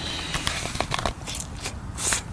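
Close, irregular rustling and crackling, a few sharp clicks a second, over a low rumble. These are handling noises as the handheld camera is moved through grass.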